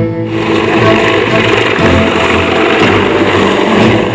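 Loud, steady rushing noise of an LCAC military hovercraft's gas-turbine engines and lift fans as it drives ashore through spray, over background music.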